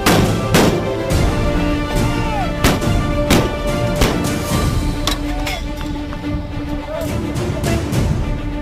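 A battery of M101A1 105 mm howitzers firing, a quick string of sharp reports in the first five seconds, over a steady music track.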